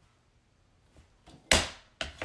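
A few faint clicks, then a single sharp thunk about a second and a half in as the plastic paper trimmer is pressed down on the table while a photo is lined up for cutting.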